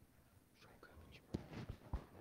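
Faint low voices, softly spoken or whispered, with a few soft knocks in the second half.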